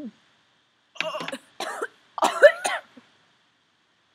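A girl gagging and coughing on a mouthful of thick baby food, in three short fits starting about a second in.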